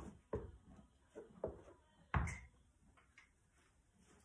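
A horse's hooves stepping on the barn aisle floor: a few separate, uneven thuds, the loudest about halfway through.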